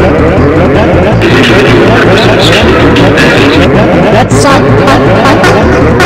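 Loud, cluttered mix of several copies of the same cartoon soundtrack playing over one another: overlapping voices in different pitches over a low droning tone that shifts in steps.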